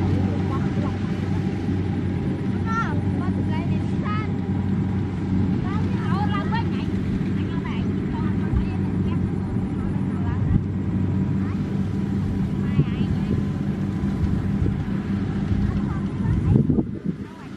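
Diesel engine of a combine harvester running steadily, a constant low drone with no change in speed.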